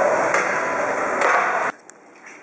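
Noisy gym background with a couple of brief knocks, cut off abruptly near the end and replaced by a quiet room's background.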